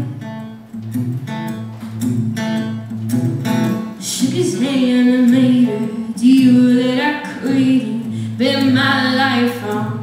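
A woman singing while strumming an acoustic guitar in a live solo performance, her voice carrying in phrases over the guitar.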